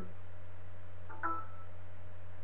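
A steady low hum with no change in level, and one short vocal sound about a second in.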